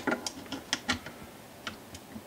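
A small metal wrench clicking on the truss rod nut of a Rickenbacker 4001 bass neck: several faint, irregular clicks. The truss rod adjustments are virtually loose, not really engaged.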